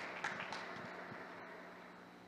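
Quiet hall ambience in a billiards arena, with a few faint short sounds in the first half second, then fading lower.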